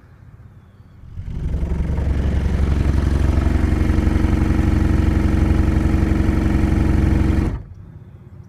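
Car audio subwoofers playing a 23 Hz test tone as a burp for a clamp test: it comes in about a second in, holds as a steady low drone with overtones, and cuts off sharply near the end. It is played just under the amplifiers' clipping point, so the tone is unclipped.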